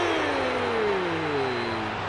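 A man's long, drawn-out exclamation, sliding steadily down in pitch: a groan at a shot that goes just wide of the goal. It sits over the steady noise of a stadium crowd.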